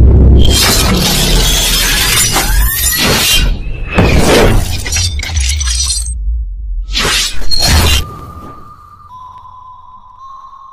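Trailer-style channel-intro sound effects: a series of loud crashing, shattering hits with a deep rumble underneath, over music. The hits stop about eight seconds in, leaving a faint steady high tone.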